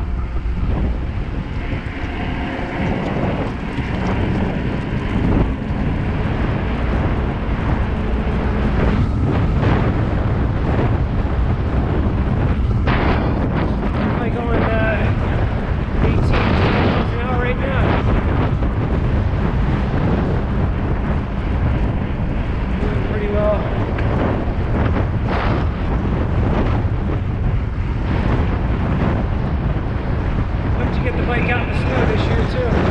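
Wind rushing over a GoPro's microphone on a moving bicycle, a loud, steady low rumble, with tyre noise on asphalt mixed in.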